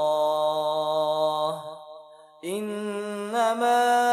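A male voice chanting an Arabic supplication, drawing out a long held note. It breaks off briefly about two seconds in, then takes up a new, slightly higher held note.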